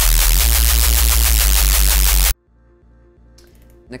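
Heavy neuro-style reese bass from a Serum synth patch: two slightly detuned sine waves with added noise, heavily distorted and compressed, with a deep EQ notch cutting the harsh mid-low frequencies. It plays loud and gritty, its low end pulsing rapidly, and cuts off suddenly a little over two seconds in, leaving only a faint residue.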